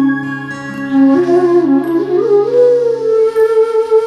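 Slow, sad flute melody with sliding notes over a sustained low accompaniment; the tune climbs in pitch over the first half and then holds a high note.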